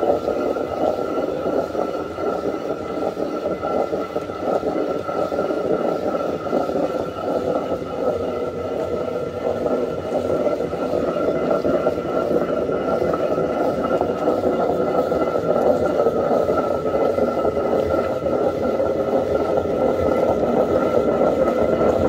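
Hand-turned stone quern grinding grain: the upper millstone rotates on the lower one in a continuous, unbroken grinding rumble, with a faint steady high tone running through it.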